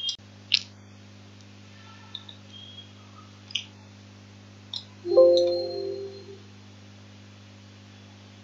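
A steady low hum with a few faint scattered clicks. About five seconds in, a short pitched tone sounds and fades away over about a second.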